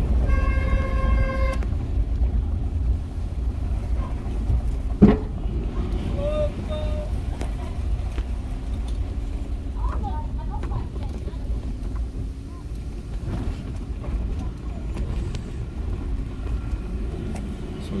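Low, steady rumble of a car driving on a rough unpaved road, heard from inside the cabin. A car horn sounds once for just over a second at the start, and there is a single sharp knock about five seconds in.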